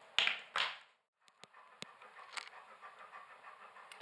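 Two short breathy rushes of noise, one after the other, then a brief drop-out and a few light, scattered clicks: handling noise and breath close to the camera as it is moved and reset.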